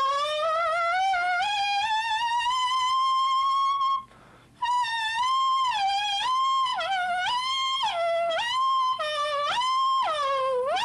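A clarinet mouthpiece and reed played on its own, without the instrument, giving a high reedy tone. It starts with a wobble and glides slowly up about an octave. After a short break for breath about four seconds in, it plays a run of notes that dip and snap back up to the top pitch, the pitch bent by moving the mouthpiece in and out. This is a flexibility exercise borrowed from brass players.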